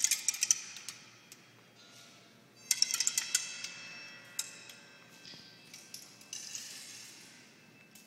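Pebbles dropping from a melting frozen-pebble pyramid and clattering onto hollow bamboo tubes, each shower a quick run of clicks with a pitched ringing that dies away. There are two main showers, one at the start and one about three seconds in, with scattered single clicks between and after.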